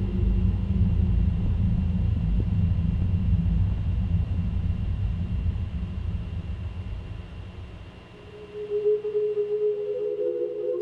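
A low droning rumble with a few steady humming tones held above it. It fades away about eight seconds in, and a steady hum comes back near the end.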